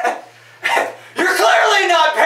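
A man laughing loudly in bursts: a short burst at the start, another about half a second later, then a longer, continuous run of laughter through the second half.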